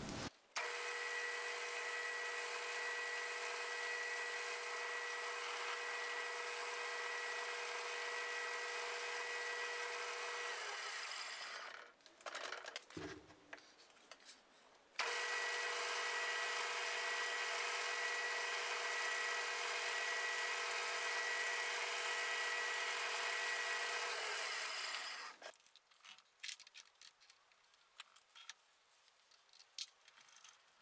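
Small benchtop metal lathe running with a steady whine while a metal rod is turned down. It runs for about eleven seconds, stops, and after a few small handling noises runs again for about ten seconds, followed by a few faint clicks.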